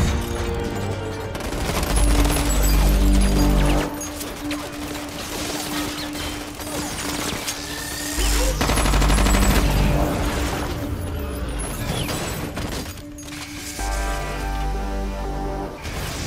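Rapid automatic rifle fire in a film soundtrack, over a dramatic score with a held note and deep swells that come back about every six seconds.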